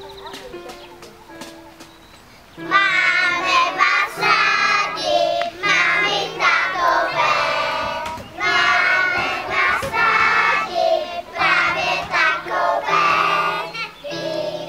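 A group of young children singing a song together over instrumental accompaniment. A quieter instrumental melody plays first, and the singing comes in loudly about two and a half seconds in.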